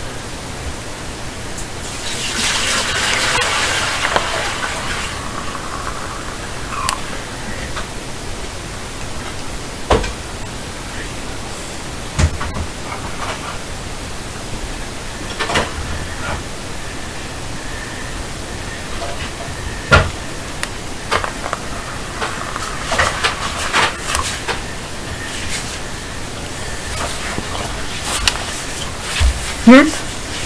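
Afterlight Box ghost-box software output: a steady hiss of noise with short chopped sound fragments and clicks breaking through every few seconds. A louder rushing stretch comes about two to four seconds in.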